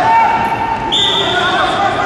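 A whistle blown once, a steady shrill note of about a second starting midway, of the kind a wrestling referee blows. It sounds over a background of voices talking and calling.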